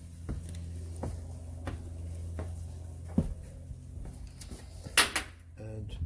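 Scattered light taps over a steady low hum, then a sharp rattling click from a door's latch and handle about five seconds in.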